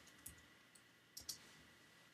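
A few faint computer keyboard keystrokes over near silence, two of them in quick succession a little past the middle.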